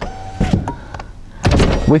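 Handling noises from a car door: a brief steady whine at the start, a knock about half a second in, and a louder clunk about one and a half seconds in.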